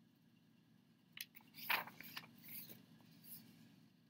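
A picture book's paper page being turned by hand: a small click just after a second in, then a brief rustle and slide of paper that trails off before the end.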